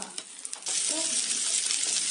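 Shrimp, pork belly and beef sizzling on an electric griddle. The sizzle jumps suddenly to a loud, steady hiss just over half a second in.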